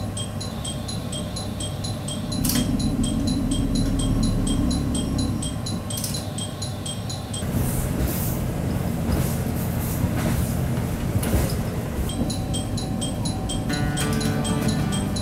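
Cabin sound of the North Rainbow Express, a KiHa 183 series diesel train, on the move: a steady low rumble of engine and wheels. The rumble grows louder about two seconds in, and the second half brings a rougher rushing noise.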